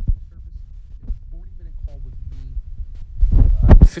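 A low rumbling hum between the host's sentences, with faint voice traces in the middle and a loud low-heavy burst near the end as his voice comes back in.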